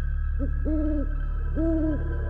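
An owl hooting: a short hoot, then two longer, even-pitched hoots about a second apart, over a steady low drone.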